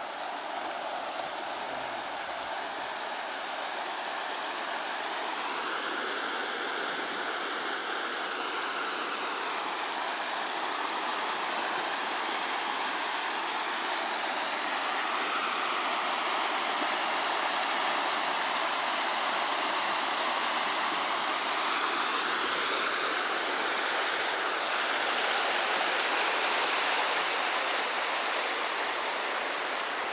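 River water rushing over a low weir: a steady wash of churning white water that grows gradually louder through the first half.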